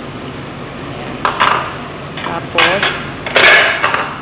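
Chopped onions, tomatoes and carrots frying in oil in a stainless steel pot, a steady sizzle, as a handful of fresh coriander leaves goes in. Three louder bursts of sizzling and clatter come about a second in, past halfway and near the end; the last is the loudest.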